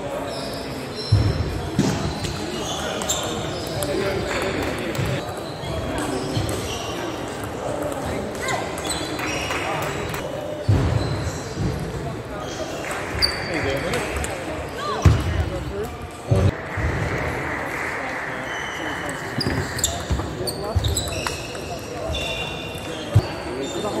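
Table tennis play: the plastic ball ticking off the bats and the table in rallies, with a few louder knocks, over the voices of a busy sports hall.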